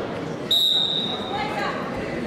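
A single high, steady signal tone starts suddenly about half a second in and lasts just under a second, ringing through a large hall over background voices.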